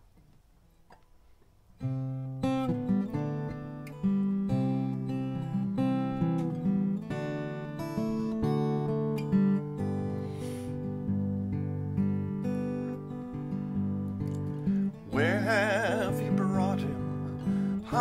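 Acoustic guitar playing the instrumental introduction to a song, starting about two seconds in after near silence. Near the end a voice begins singing with vibrato over the guitar.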